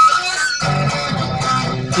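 Electric guitar playing between sung lines: a high note rings at the start, then chords are strummed from about half a second in.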